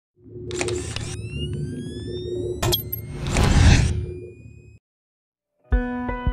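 Intro sound effects: a short burst of noise, rising tones, a sharp camera-shutter click, then a swelling whoosh that fades out about five seconds in. Music begins just before the end.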